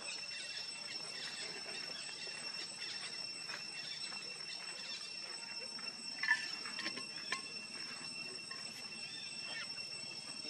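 Steady high-pitched insect drone, with a short chirp about six seconds in and a sharp click about a second later.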